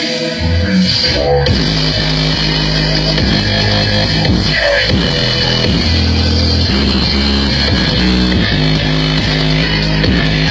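Loud music with heavy bass and guitar played through a large truck-mounted speaker stack.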